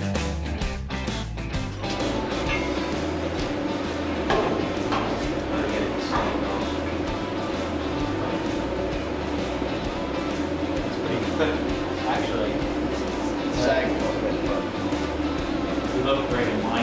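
Background rock music with guitar and bass, with a voice over it from about two seconds in.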